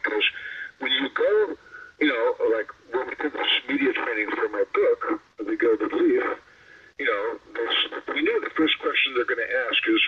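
Speech only: a man talking at length in an interview, his voice thin and cut off at the top like a phone or internet call line.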